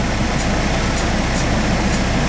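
Semi-truck's diesel engine idling, a steady low rumble with an even pulse, heard from inside the cab.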